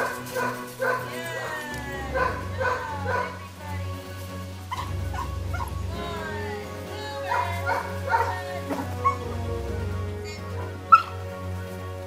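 Dog barking in short runs of a few barks each, three runs in all, over background music. A single sharp click near the end.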